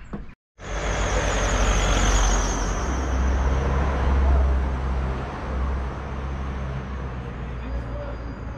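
Street traffic noise: a steady low rumble of vehicles with a wavering high whine. It starts abruptly after a brief dropout, is loudest around the middle and eases slightly toward the end.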